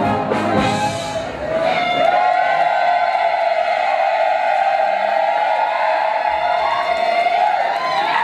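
Brass band playing dance music, settling into one long held high note that wavers slightly and rises a little near the end.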